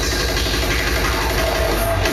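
Loud electronic club music from a hardcore drum and bass DJ set played through a PA, dominated by a heavy, distorted bass.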